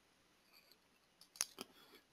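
Near silence broken by two quick computer-mouse clicks, about a second and a half in.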